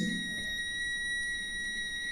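Digital multimeter's continuity beeper sounding one steady, unbroken high tone as its probes bridge a ceramic capacitor reading zero ohms. The tone is the sign of a short circuit in the motherboard's CPU circuit.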